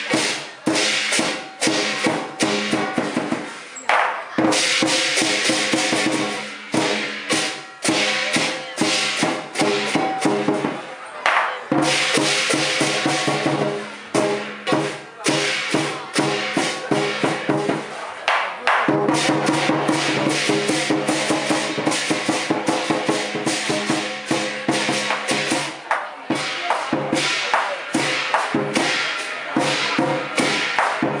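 Cantonese lion dance percussion: the lion drum beating a fast, driving rhythm with cymbals clashing and a gong ringing under it, pausing briefly a few times.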